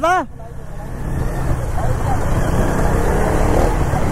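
Motorcycles riding along a rough dirt road: a steady low rumble of engine, tyres and wind that grows louder over the first second or so.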